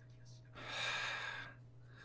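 A man's short breathy laugh near the microphone: one puff of air lasting about a second, in the middle, over a faint steady low hum.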